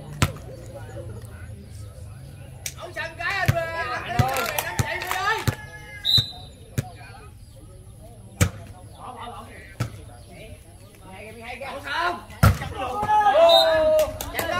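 A volleyball being struck by hands during play: a series of sharp slaps a second or more apart, the loudest near the end. Voices call out in between.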